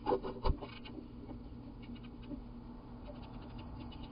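A wren's feet scratching and knocking on the wooden nest box at the entrance hole. A quick run of sharp scratches and knocks with one low thump comes in the first second, and fainter scratching follows near the end.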